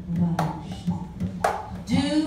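Acoustic guitar strummed in slow, accented strokes about once a second over a sustained piano-accordion chord.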